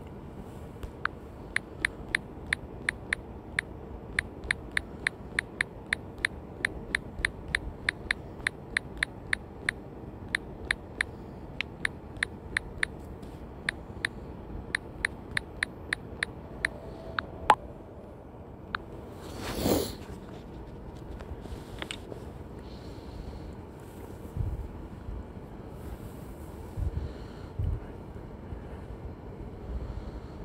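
Phone on-screen keyboard key-press clicks as a text message is typed, about two to three taps a second, stopping about two-thirds of the way through. A short whoosh follows a couple of seconds later, over a steady low background hiss.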